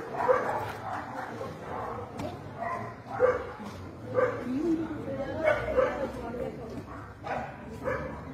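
A dog barking several times in short separate barks, over the voices of people nearby.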